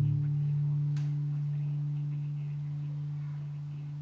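The band's last chord on acoustic guitars and bass left to ring out after the final strum, one sustained chord slowly fading away.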